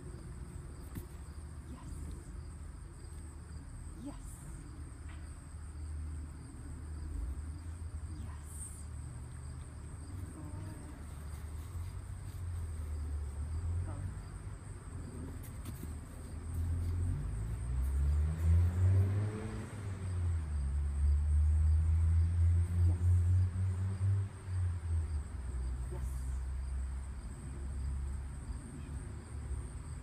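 A vehicle passing on the street, building to its loudest about eighteen to twenty-four seconds in and then fading, with its pitch rising and falling as it goes by. Under it runs a low outdoor rumble, and over it a steady high insect buzz.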